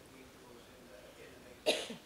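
A single short, sharp cough near the end, with faint speech before it.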